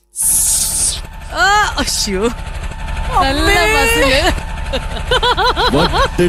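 A man's voice through a stage microphone making drawn-out, sliding vocal sounds, ending in a quick run of short rising-and-falling calls, over a steady low engine-like rumble. A short hiss opens it.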